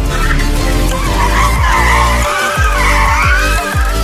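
Tesla Model S tyres squealing as the car drifts and spins its rear wheels, a screech that wavers up and down in pitch, over dubstep music.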